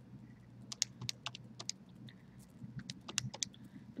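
Calculator keys being pressed to work out a sum: an irregular run of faint key clicks in two bunches, with a short pause between them.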